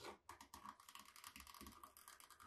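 Craft knife blade cutting through molded vegetable-tanned leather, a faint, fast run of tiny crisp clicks and scratches as the blade works along the edge.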